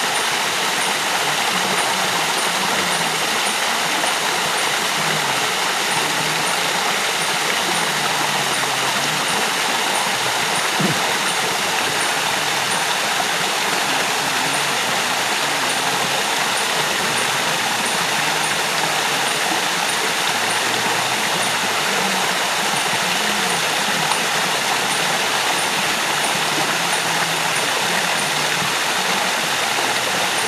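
Steady rush of a waterfall pouring into a river pool.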